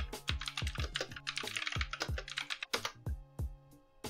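Typing on a computer keyboard: a quick, irregular run of keystrokes that stops shortly before the end, over soft background music.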